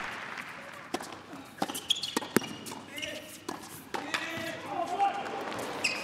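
Scattered sharp knocks of a tennis ball bouncing on an indoor hard court, over a low murmur of crowd voices in a large hall.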